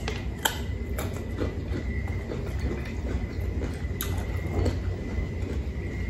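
Close-up crunching and chewing of a firm, sour unripe Indian mango slice, with a few sharp crunches scattered through the chewing. A steady low rumble runs underneath.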